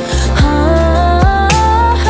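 A woman sings a held, wordless "oh-oh" line that steps upward in pitch, over a steady bass and two deep kick-drum hits in a slow pop/R&B backing track.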